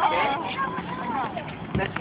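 Children's voices talking and calling over one another, high-pitched and indistinct.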